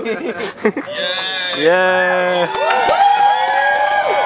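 Convention panel audience cheering: several people holding long, high-pitched whoops that overlap, starting about a second in, with a few scattered claps.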